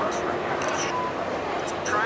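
Indistinct chatter of many people at once, with a brief faint beep about halfway through.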